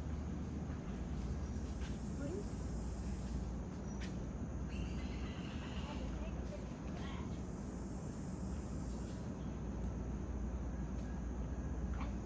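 Steady jungle ambience: a high insect drone that swells twice, with faint voices of people in the background and a single click about four seconds in.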